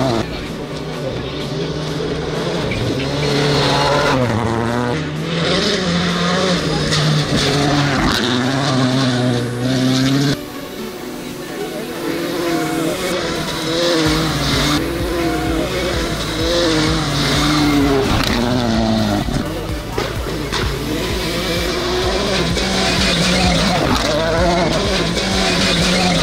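Rally cars racing on a dirt stage, engines revving hard and rising and falling in pitch through gear changes as they pass, with background music underneath.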